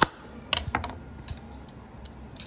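Kitchen knife cutting through a bitter gourd onto a wooden chopping board: one sharp knock at the start, then a few lighter clicks and taps.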